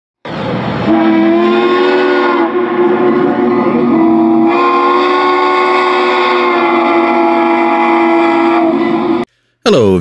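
A train whistle sounding one long blast, several tones together, loud and steady. It cuts off suddenly near the end.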